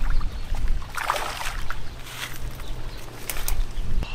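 Wind rumbling on the microphone at the water's edge, with a splashing rush about a second in as a hooked largemouth bass is landed at the shoreline, and a few sharp clicks of handling later on.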